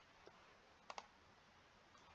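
Near silence, with a faint click about a quarter second in and a quick pair of clicks about a second in, from a computer mouse being clicked.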